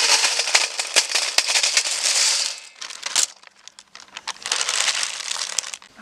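Raw dried pani poori discs poured from a plastic packet into a steel bowl: the packet crinkles and many small, hard pieces clatter onto the metal, with a short lull in the middle.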